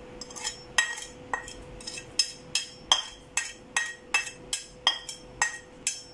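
Metal spatula tapping repeatedly against a ceramic plate, about two to three sharp clinks a second, each with a brief ringing tone, as powder is knocked off the plate into a sieve.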